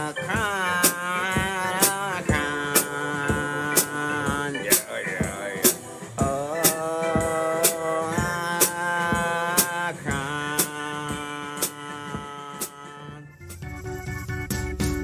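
A simple five-note children's blues song: a voice sings long held notes ('Omicron', 'oooo') over a drum beat that hits about once a second. The music thins out near the end.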